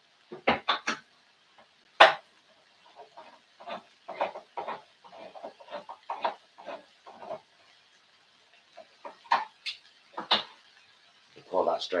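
Kitchen utensils clattering: a spoon knocking and scraping against a pan or tin, with one sharp clank about two seconds in and a run of quick light strokes after it.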